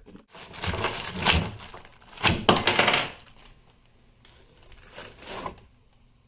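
Plastic wrapping rustling and crinkling as a mini electric chainsaw is unwrapped and handled, in two loud bursts in the first half with a few sharp knocks about two and a half seconds in, then softer rustles near the end.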